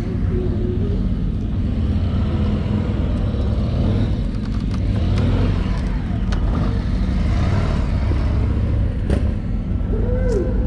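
Sport motorcycle engine idling steadily, a continuous low rumble.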